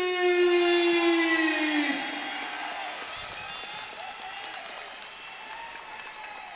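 A ring announcer's long, drawn-out call of the fighter's name, held on one pitch and slowly sinking, ends about two seconds in. The arena crowd's cheering and applause carries on beneath it and fades away.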